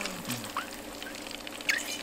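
Skewered sausages and fish balls deep-frying in a pot of hot oil: a steady bubbling hiss dotted with fine crackles, with a brief high squeak about a second and a half in.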